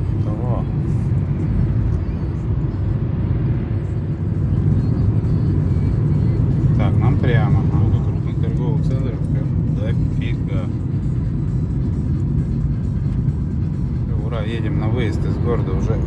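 Steady low road and engine rumble heard inside the cabin of a car driving in city traffic.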